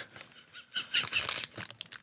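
Men laughing in airy, wheezy bursts, with the crinkle of an aluminium foil wrapper being handled.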